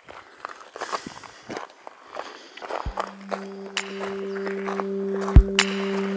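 Footsteps crunching irregularly on a forest trail. About three seconds in, background music begins with steady low held tones, and two heavy low hits near the end are the loudest sounds.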